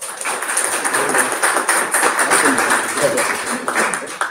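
Audience applauding: a steady, loud round of clapping.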